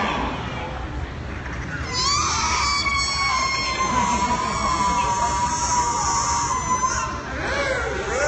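Killer whale calling in air with its head held out of the water: one long high call that starts about two seconds in, rises at first, then holds near one pitch with a slight waver for about five seconds before breaking off.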